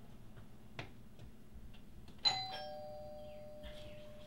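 Two-note doorbell chime: a higher tone struck about two seconds in, followed at once by a lower tone that rings on for over a second.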